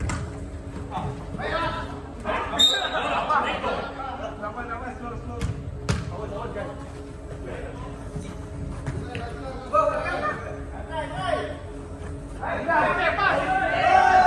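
Players' voices calling across an indoor football pitch, echoing in the hall, loudest in the last two seconds. A few sharp thuds of the ball being kicked, one at the start and two close together about six seconds in.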